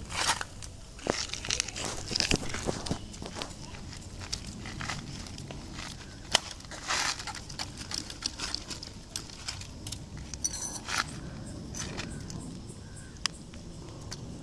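Irregular handling noise: scrapes, clicks and crunching of grit as a black plastic pipe joint and hand tools are worked on sandy, gravelly ground, with one sharp click about six seconds in.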